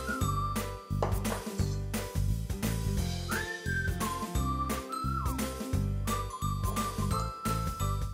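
Background music: a high, whistle-like melody holding long notes that slide up and back down, over a repeating bass line and a light tapping beat.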